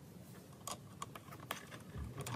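A few faint, sharp clicks and taps of small objects being handled on a workbench, the loudest about one and a half seconds in.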